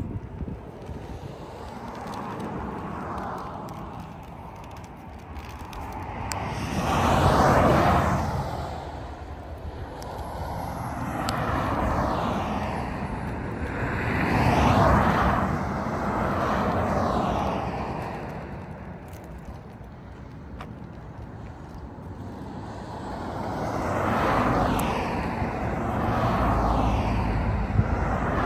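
Road traffic noise: cars passing one after another on a two-lane highway, each a whoosh of tyres and engine that swells and fades. About six go by, the loudest about a quarter of the way in and again about halfway.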